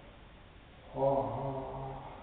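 A man's low voice intoning a held chanted syllable at a steady pitch, starting about a second in and lasting about a second.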